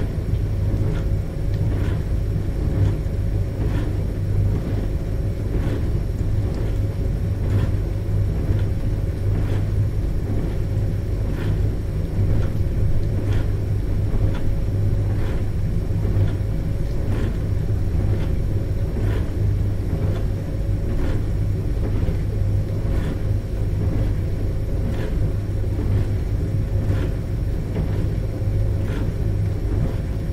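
A dishwasher running: a steady low hum and rumble with an even tone above it, and faint short pulses repeating about once a second.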